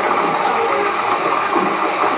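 Sound effect of a rainstorm and rushing floodwater: a steady, loud roar of noise.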